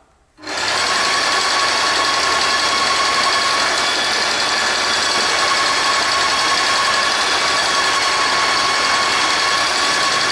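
Airless paint sprayer running, starting about half a second in and keeping up a steady hum with a high whine, as the old paint is flushed out through the spray gun until fresh paint comes through.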